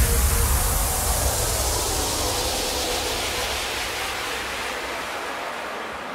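Electronic dance music effect: a white-noise wash or downlifter that fades steadily, with a deep bass tail dying away near the end, as the track breaks down.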